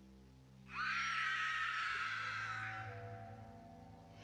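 A loud, high-pitched shriek bursts in suddenly about a second in and fades away over about two seconds, over slow sustained ambient music notes.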